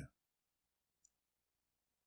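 Near silence: a man's voice trails off right at the start, then one faint click about a second in.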